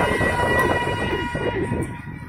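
A sela sung through the minaret's loudspeakers, the reciter settling into one long held note that fades about a second and a half in. A car passes close by at the same time, its road noise dying away near the end.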